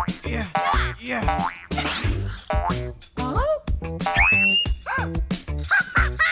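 Cartoon boing sound effects, springy tones that rise and fall in pitch, repeated many times over upbeat children's background music, with a rising whistle a little past four seconds in.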